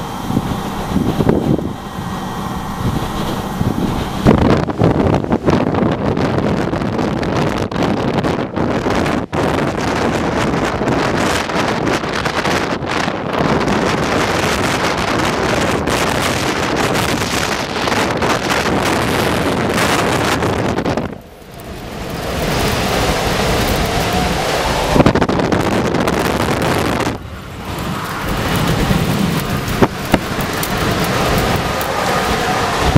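Strong, gusty thunderstorm wind buffeting the microphone: a loud, steady rush with sudden gusts. It drops away briefly twice in the second half.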